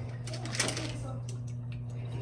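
Light handling noise from a drip coffee maker: its power cord and glass carafe being moved, a few faint clicks over a steady low hum.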